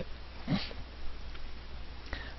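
Steady low electrical hum and faint hiss from a recording microphone, with a short sniff about half a second in.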